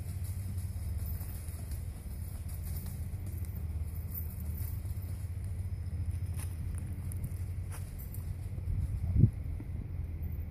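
Low, steady wind rumble on the microphone, with one sharp thump about nine seconds in.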